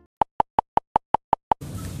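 A rapid run of eight short electronic beeps, all at the same pitch, about five a second. A steady rushing background noise comes in near the end.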